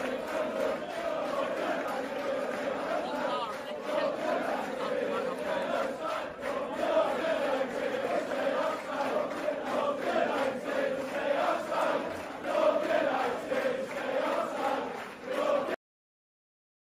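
A large crowd of football supporters chanting together in unison, without a break. It cuts off suddenly just before the end.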